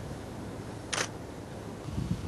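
Nikon D300 digital SLR taking a single shot: one short, sharp shutter-and-mirror click about a second in, over a faint, steady low background rumble.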